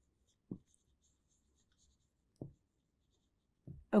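Marker pen writing on a whiteboard: faint, scattered scratches and squeaks of the felt tip. Two soft, brief low thumps come about half a second and two and a half seconds in.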